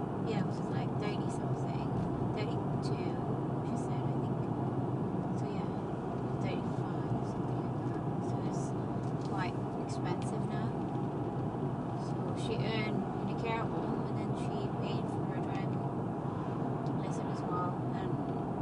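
Steady road and engine noise inside a moving car's cabin at cruising speed, with no change in pace.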